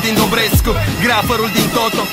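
Romanian hip hop track: rapped vocals over a beat with a steady bass line and a deep, falling kick drum about half a second in.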